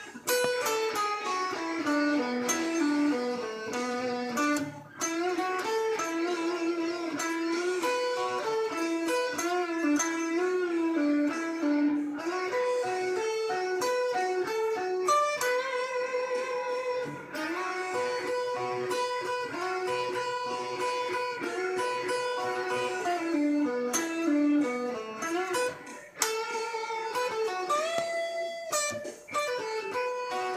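Electric guitar playing a blues-rock lead solo in B minor at half speed: single-note lines and descending runs, with a few notes bent upward.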